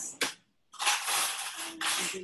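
A short click, a brief cut-out of the audio, then about a second of crackling, rustling noise over a video-call line.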